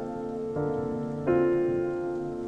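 Slow piano waltz, two new chords struck about half a second and just over a second in and left to ring, over a steady patter of rain.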